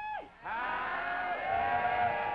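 A drawn-out shouted "How-dee!" greeting. One held cry ends just after the start, and a second, longer one is held at a steady pitch from about half a second in.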